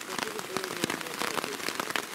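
Hail and heavy rain hitting a tarp overhead: a steady hiss crowded with dense, irregular sharp ticks.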